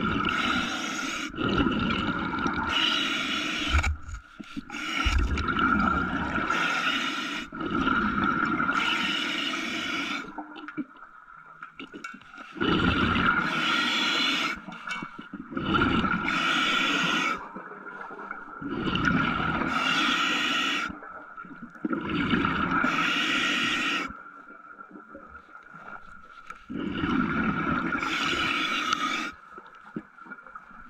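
A diver's breathing heard in the water: long rushing breaths and bubbling, each lasting a second or two with short pauses between, about a dozen over the stretch, over a steady high hum.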